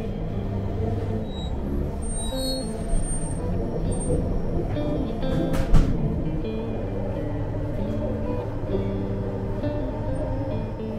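Background music with held, shifting notes over the steady low rumble of a moving train, with one short knock a little before the middle.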